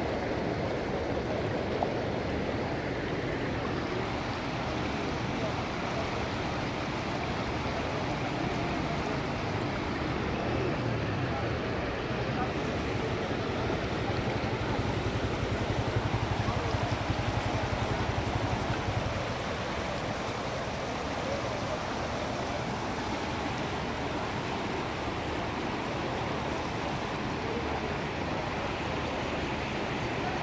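Floodwater rushing over a road in a fast, churning torrent: a steady wash of water noise that swells a little about halfway through.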